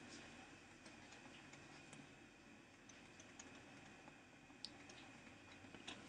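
Near silence, with faint, scattered ticks of a stylus tapping and writing on a tablet screen; one tick about four and a half seconds in is a little louder than the rest.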